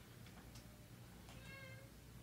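Near silence: room tone with a steady low hum and a faint, brief pitched sound about one and a half seconds in.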